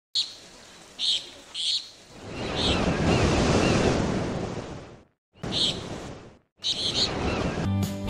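Ocean waves washing in, after three short high bird chirps; the sound drops out briefly twice, and music begins near the end.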